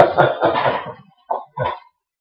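A man's laughter tailing off, followed by two short coughs.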